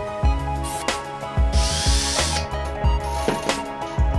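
Background music with a steady beat, with a small electric drill whirring briefly, for just under a second about a second and a half in, as a thin bit bores a hole through a thin plastic sheet.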